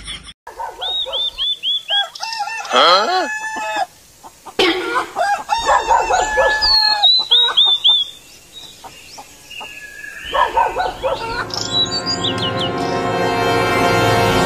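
Chickens calling: runs of short, repeated high clucks about a second in and again around six seconds, with a longer falling call, like a rooster's crow, near three seconds. Music comes in and swells over the last few seconds.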